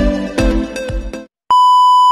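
Electronic music with a steady beat, cut off about a second in; after a brief silence a loud, steady test-tone beep of a single pitch starts near the end, like the tone that goes with a TV test pattern.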